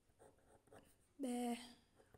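Faint scratching of a ballpoint pen writing on paper, a few short strokes in the first second as a letter is drawn.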